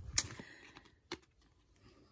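Trading cards handled and set down on the table: a few light taps and clicks, the sharpest just after the start and another about a second in.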